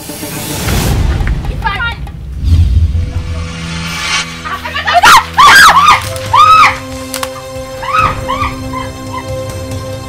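A loud dramatic hit opens, then a film-score bed of held tones, over which a woman screams in a run of short, high, rising-and-falling cries about halfway through and again near the end.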